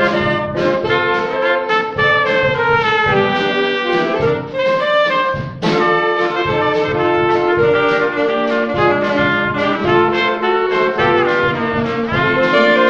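A small student band of alto saxophones and a trumpet playing a tune together over a drum kit keeping a steady beat, with a brief break about halfway through before the band comes back in.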